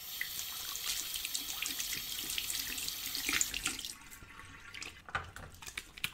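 Water running from a tap into a sink for a little under four seconds, then shut off, followed by faint scattered clicks.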